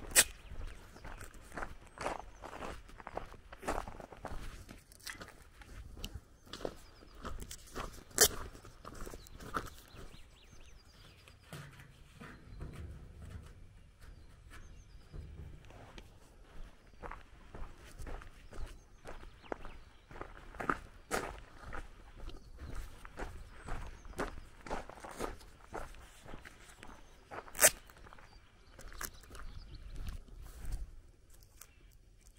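Footsteps on a gravel road at a steady walking pace, about two steps a second. Three sharp clicks stand out louder than the steps: one near the start, one about eight seconds in, and one near the end.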